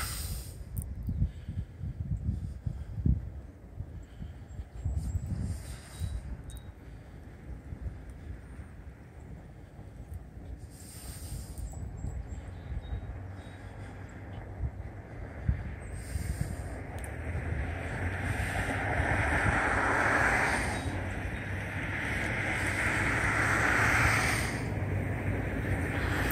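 Wind buffeting the microphone, and the approaching Amtrak Cardinal passenger train, heard as a broad rushing rumble that grows steadily louder over the second half.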